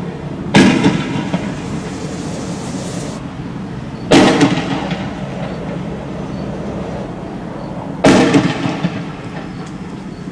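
Three loud bangs about four seconds apart, each a sharp crack followed by about a second of rattling echo, over a steady low rumble.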